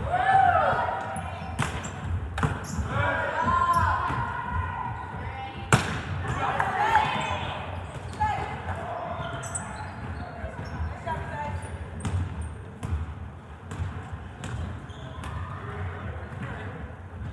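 Sharp smacks of volleyballs being hit and striking the hardwood floor, a few spaced apart with the loudest about six seconds in, echoing in a large gym. Players' shouts and calls rise and fall among them.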